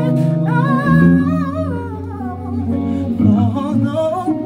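Male voice singing a wavering, ornamented vocal line over held electric guitar chords.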